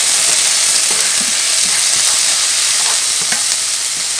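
Diced onion and minced garlic sizzling in hot olive oil in a nonstick saucepan, a steady hiss, while a spatula stirs them.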